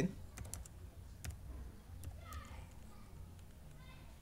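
Scattered keystrokes and clicks on a laptop keyboard, a quick cluster near the start and then single taps about a second and two seconds in.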